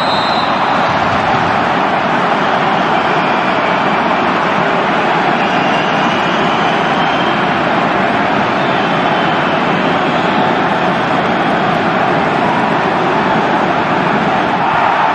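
A loud, steady rushing noise that holds the same level throughout, with faint high tones just at the start.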